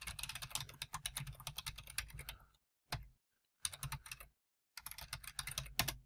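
Computer keyboard typing: a quick run of keystrokes for about two and a half seconds, then, after a pause, a single key and two shorter bursts of keystrokes near the middle and end.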